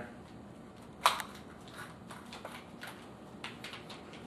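Handling clicks as a metal tool shank is seated in a cordless drill's chuck: one sharp click about a second in, then a few faint ticks. The drill motor is not running.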